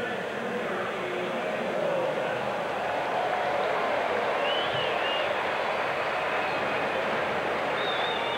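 Ballpark crowd noise: a steady murmur of many spectators in the stands, with a faint high call or whistle rising above it about halfway through and again near the end.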